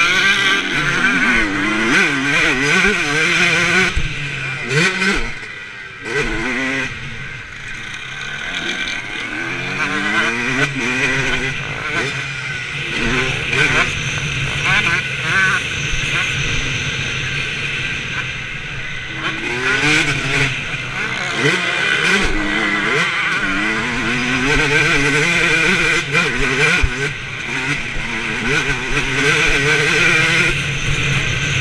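Motocross bike engine, recorded from the rider's helmet camera, revving up and down in pitch again and again as the throttle opens and closes around the track. It eases off briefly about six seconds in.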